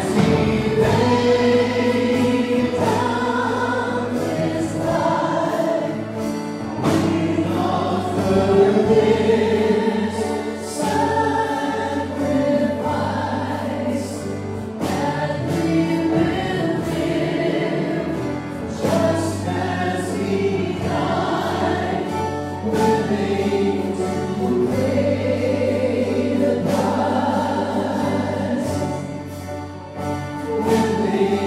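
A church praise band playing and singing a worship song: several voices singing together over a drum kit, guitars and keyboard, with a steady beat.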